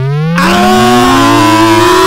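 A viewer-donated "ear rape" meme sound file played on a livestream at very high volume: one long tone rising steadily in pitch, joined about a third of a second in by a loud, distorted blast.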